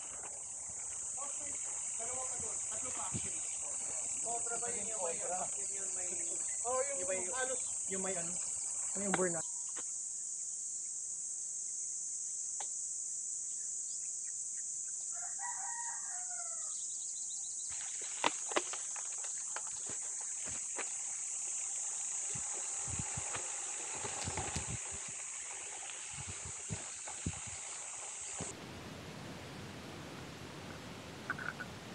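Steady high-pitched insect drone from crickets or cicadas, with rooster crowing several times in the first third and once more about halfway. Two sharp clicks come a little after the middle, and the insect drone stops near the end.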